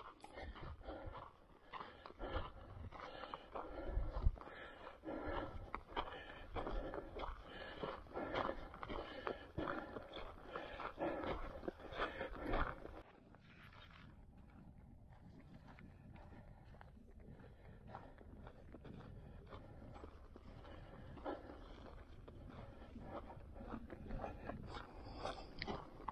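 Footsteps on a dirt hiking trail with brush rustling, a quick uneven series of steps. About halfway through it cuts abruptly to a faint steady hiss.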